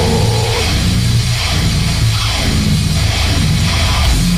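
Loud heavy metal music playing steadily.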